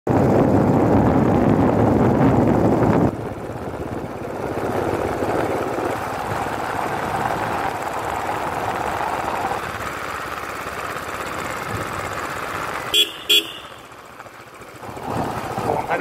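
Motorcycle running along a road, its engine mixed with wind rushing over the microphone, loudest in the first three seconds. Two short horn beeps about 13 seconds in, followed by a brief lull.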